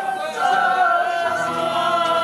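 A man singing, holding one long note, to his own strummed acoustic guitar.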